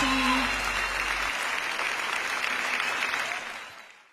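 Concert audience applauding, as the band's last held note and bass die away in the first second or so; the applause fades out near the end.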